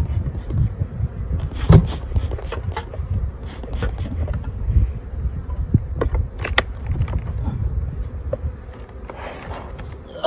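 Honey bees buzzing around an opened hive, under a steady low rumble. Sharp knocks and scrapes sound as the hive lid and honey super are handled, the loudest about two seconds in and another pair a little past the middle.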